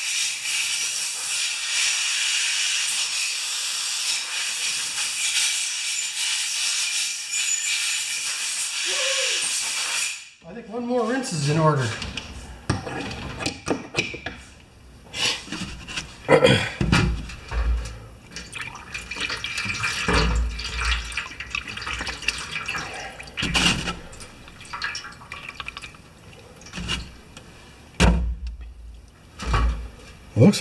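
Compressed air from a blow gun hissing steadily for about ten seconds, blowing rinse water and loosened corrosion out of the Annovi Reverberi pump head, then cutting off suddenly. After that come scattered clinks and knocks as the metal pump head is handled over a metal pan.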